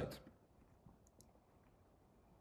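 Two faint computer mouse clicks about a second in, a fifth of a second apart, against near silence.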